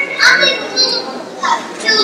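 Children's voices speaking a few short phrases, words not clear.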